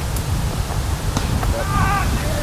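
Strong wind buffeting the microphone, a heavy rough rumble throughout. A faint knock comes a little over a second in, and a distant shout from a player near the end.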